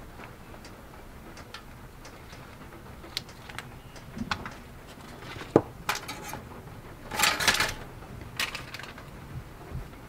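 Kitchen handling sounds as butter is put with a table knife into an aluminium-foil packet of food: scattered light knife clicks and taps, one sharp click a little over halfway, and a brief crinkling rustle about seven seconds in.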